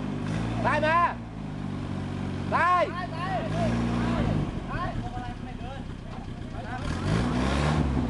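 Engine of a lifted Suzuki 4x4 running under load as it tries to climb out of a deep rut, revving up twice: about three and a half seconds in and again near the end. The truck is straining without making much headway.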